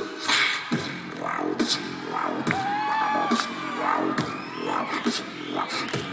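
Live beatboxing: mouth-made percussive hits, kick- and snare-like, in a steady rhythm over a low hummed bass. A held, pitched vocal tone bends up and down in the middle.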